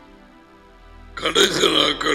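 Soft background music, then a short, loud vocal sound from a man close to a headset microphone, starting just over a second in and lasting about a second and a half.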